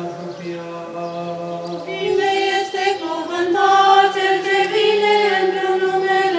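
Orthodox liturgical chant: a man's voice intones on a low held note, then about two seconds in a louder choir comes in on higher, sustained notes, singing the response.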